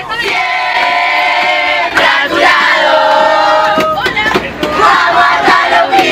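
A busload of children and teenagers chanting a football fan song together, loud and shouted, with brief breaks between lines about two and four seconds in.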